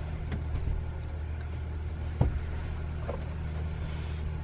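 A steady low mechanical hum, like an engine or motor running, with one sharp knock about two seconds in and a few faint clicks.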